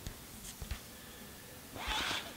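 Quiet handling of a cardboard CD digipak as it is opened flat, with a few soft low knocks and a brief soft rush of noise near the end.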